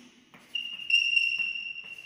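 A steady high-pitched whistle-like tone that starts about half a second in and holds one pitch.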